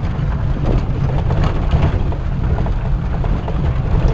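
Vehicle cabin noise while driving on a rough unpaved gravel road: a steady low rumble from the engine and tyres, with scattered knocks and rattles from the bumpy track.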